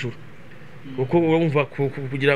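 A man talking, resuming after a short pause at the start; a faint steady hiss fills the pause.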